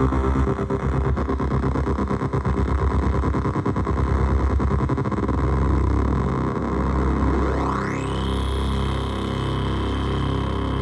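Korg Volca Keys synthesizer played through an Iron Ether FrantaBit bitcrusher pedal, its sound reshaped as the pedal's knobs are turned. It starts as a dense, fast-stuttering digital texture. About seven seconds in, a tone sweeps steeply up in pitch and then holds as a steady high tone over a repeating low pulse.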